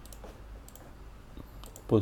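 A few faint, scattered computer mouse clicks over low, steady room noise, as notebook cells are deleted and added on screen.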